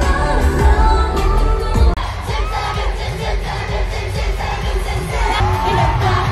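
Live pop concert in an arena: loud amplified music with heavy bass, then about two seconds in a sudden cut to a large crowd cheering and singing along over the music.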